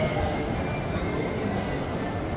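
Shopping-mall atrium ambience: a steady wash of indistinct distant voices over a constant background hum.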